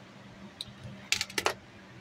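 A quick run of five or six small, sharp clicks and clinks about halfway through, made by hard plastic and metal parts knocking together as the resistor and hand tools are handled. A faint steady hum runs underneath.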